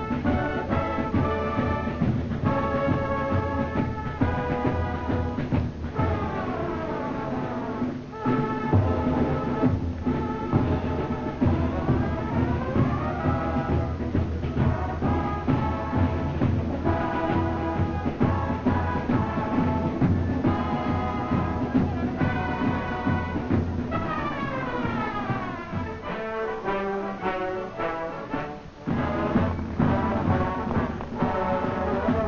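A high-school symphonic wind band playing a concert piece, the full band with sweeping runs. It drops to a softer passage near the end, then the full band comes back in.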